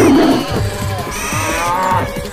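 Cattle mooing twice over background music: a loud call at the start that falls in pitch, then a longer, higher call beginning a little after a second in.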